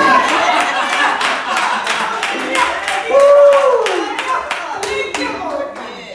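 Congregation clapping, many hands striking unevenly, with voices calling out over the applause. One drawn-out call rises and falls about three seconds in. The clapping thins out and fades near the end.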